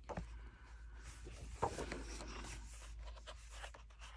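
Paper pages of a hardback coloring book being turned by hand: a faint rustle and slide of paper, with two sharper flicks, one at the start and one about a second and a half in.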